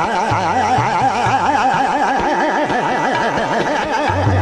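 Hindustani classical khayal vocal singing a fast taan in Raag Khat, the voice swinging rapidly up and down in pitch several times a second, with tabla strokes and harmonium accompaniment underneath.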